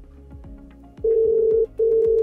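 Call ringing tone of an outgoing call: a steady mid-pitched tone in two long pulses with a brief break between them, starting about a second in, over soft background music.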